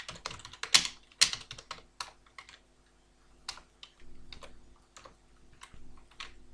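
Computer keyboard typing: a quick run of keystrokes for the first two and a half seconds, a brief pause, then slower, scattered keystrokes.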